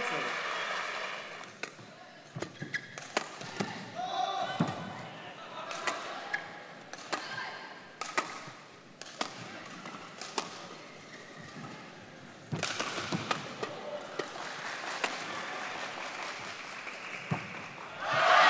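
Badminton rally: sharp racket strikes on the shuttlecock at irregular intervals, roughly a second apart, over a murmuring arena crowd that gets louder about two-thirds of the way through.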